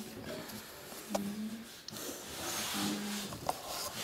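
A quiet pause in a small room: a few short, soft murmurs of a voice, and faint scratching of pens on paper as the words are written down.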